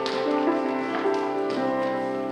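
Live piano music: sustained chords changing every half second or so, with a few light taps over them.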